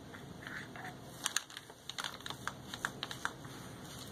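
Small paintbrush tapping and scraping against a plastic paint palette while mixing paint, a scatter of light, irregular clicks with a small cluster about a second in.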